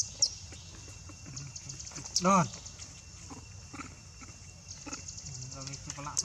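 Baby macaque crying out in distress while it is held and its wounds are cleaned, with one loud, arching call about two seconds in.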